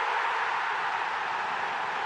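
Stadium crowd noise from a packed football ground: a dense, steady wash of many voices with no single voice standing out, as a shot goes in on goal.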